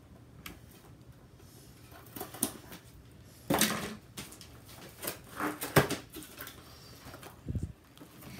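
A cardboard craft-kit box being handled on a paper-covered table: scattered taps, scrapes and rustles. A louder knock and scrape comes a little before halfway, more come around three quarters through, and there is a low thump near the end.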